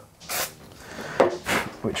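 Short hiss of an aerosol can of glue activator sprayed onto the glued elastic about a third of a second in, to make the glue set faster, followed by a couple of brief quieter sounds about a second later.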